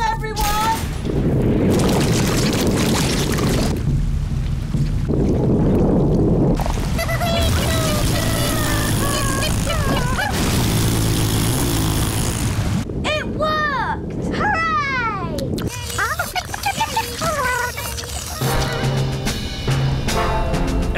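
Cartoon sound effects: a loud rushing gush for the first several seconds as magic jelly blasts into a rocket's fuel tank and drives it off, then background music with wordless, sliding voice sounds.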